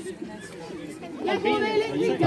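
People's voices chattering, faint at first and louder from a little over halfway through.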